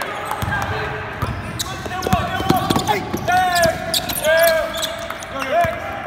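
Basketball practice on a hardwood gym court: balls bouncing, with short squeals of sneakers on the floor a few times, under players' voices calling out.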